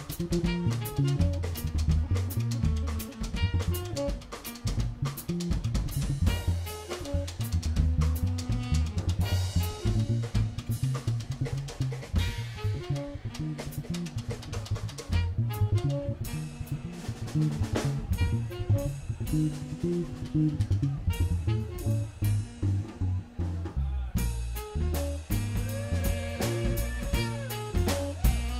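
Live funk-jazz band playing an instrumental groove, led by a busy drum kit with snare and rimshot hits over bass drum, with low notes moving underneath.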